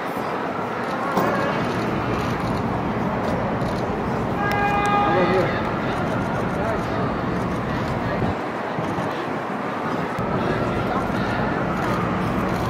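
City street noise with traffic and indistinct voices. A car horn sounds for about a second near the middle.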